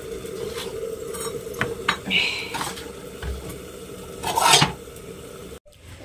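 Metal kitchen utensils, likely tongs, clinking and knocking against an iron tawa griddle while rotis are turned, a handful of separate clinks over a steady low hum; the loudest comes about four seconds in.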